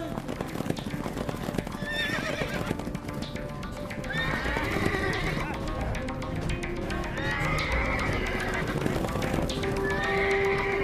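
Sound effect of horses galloping, a fast clatter of hooves, with horses whinnying a few times over background music.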